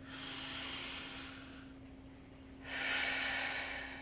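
A woman's two long, audible breaths taken as part of a guided breathing exercise: a softer breath lasting about a second and a half, then a louder, airy one starting about a second later.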